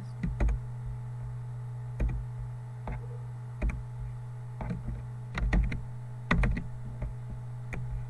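Computer mouse and keyboard clicks, irregularly spaced with some in quick pairs, over a steady low electrical hum.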